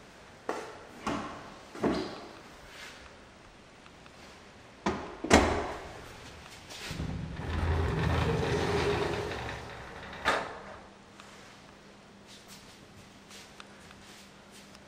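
A sliding interior door being handled: a few light knocks and clunks, a sharp knock about five seconds in, then the door rolling along its track for about three seconds and stopping with a knock.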